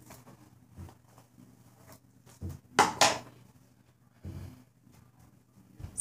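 Soft rustling and handling noises from hair being brushed and put up, with two sharp clicks close together about three seconds in.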